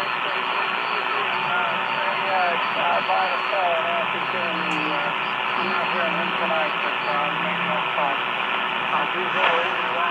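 Hallicrafters shortwave receiver playing band static through its loudspeaker: a steady hiss, cut off above the speech range, with a faint voice from a distant amateur radio station coming through it for most of the time.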